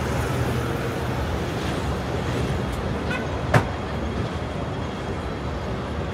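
Steady city street traffic, with a double-decker bus's engine hum passing close by in the first second or two, fading after. One sharp click about three and a half seconds in.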